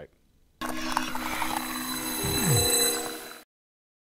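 Short synthesized audio-logo sting: several held tones with a high shimmer on top and a steep downward swoop about two seconds in, starting about half a second in and cutting off suddenly after roughly three seconds.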